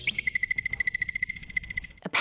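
Groundhog (woodchuck) alarm call, the high-pitched whistle marmots give when a predator approaches. It opens with a short whistle that drops sharply in pitch, then runs into a rapid, even trill of short high pulses at one steady pitch, and cuts off near the end.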